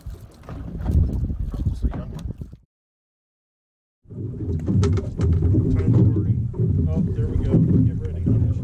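Steady low rumble of boat and wind noise on open water, with scattered knocks and handling bumps. The sound drops out to dead silence for about a second and a half in the middle, then the rumble returns.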